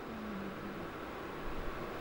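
A pause in speech: the steady hiss of room tone picked up by a lecture microphone, with faint low bumps about one and a half seconds in.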